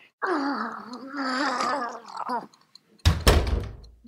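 A drawn-out wordless voice sound, held on one wavering pitch for about two seconds, then a heavy thunk about three seconds in with a low rumble that dies away: a sound effect in an audio drama.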